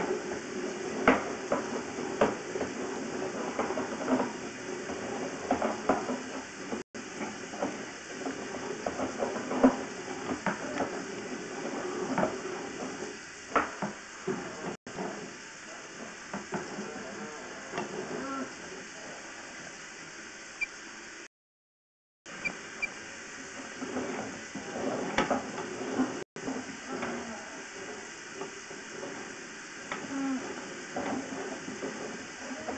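Sewer inspection camera and its push cable being fed along a drain pipe: irregular clicks, knocks and scraping over a steady hiss. The sound is broken by a few short silent gaps.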